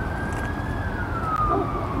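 Emergency-vehicle siren wailing in the distance, one slow sweep that rises in pitch and then falls, over a low rumble.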